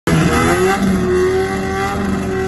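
Car engine revving up over the first half-second, then held at high, steady revs before a drag-race launch.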